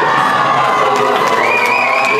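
Audience cheering and shouting, with long high-pitched cries held over the crowd noise, one rising higher and held from about midway.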